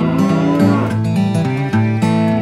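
Strummed acoustic guitar music with a cow's moo laid over it, a single call with a bending pitch in the first second or so.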